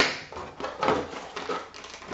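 Cardboard and paper packaging being handled: a small cardboard box is opened and paper rustles, in a few short rustles and scrapes.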